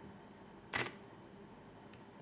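Canon EOS R6 camera body giving a single short mechanical clack about three-quarters of a second in, as the camera shuts down.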